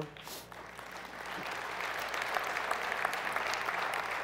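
An audience clapping, building up over the first couple of seconds and then holding steady.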